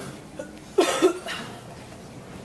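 A person coughs twice in quick succession, a little under a second in.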